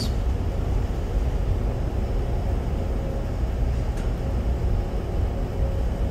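Room tone: a steady low rumble with a faint, steady hum.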